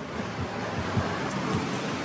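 A steady, even background noise with a few faint rustles as the phone is moved about.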